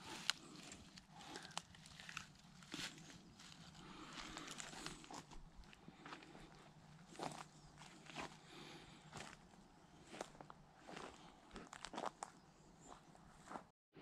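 Faint footsteps on a dry pine-forest floor, with scattered crackles and snaps of twigs, needles and cones underfoot.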